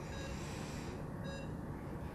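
Patient monitor's pulse-oximeter tone beeping twice, about one short beep every second and a quarter, keeping time with the heartbeat, over a steady low hum.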